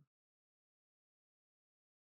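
Silence: the sound track is blank, with no audible sound at all.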